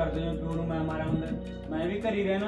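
Background music built on sustained, held drone-like tones with a low hum underneath.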